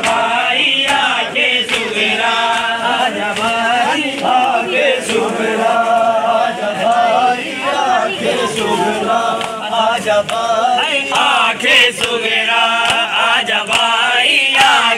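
A crowd of men chanting a noha in unison, with sharp slaps of hands on bare chests (matam) falling in a steady beat.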